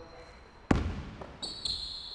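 A single basketball bounce on a hardwood gym floor, echoing in the large hall. It is followed about a second later by high, drawn-out squeaks of sneakers on the court.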